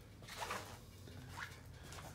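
Quiet indoor room tone with a steady low hum. Two faint soft noises come about half a second and a second and a half in.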